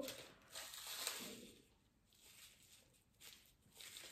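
Near silence, with a faint brief rustle of a plastic sweet wrapper being handled, about half a second to a second and a half in.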